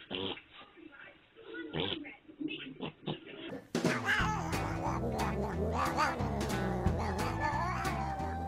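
A cat meowing in a few short calls. About three and a half seconds in, it gives way to music with a steady beat.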